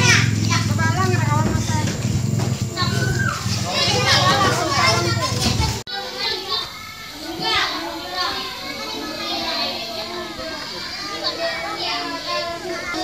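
Many children's voices chattering and calling out at once, overlapping. A low steady rumble under the first half stops abruptly about six seconds in, leaving the voices quieter.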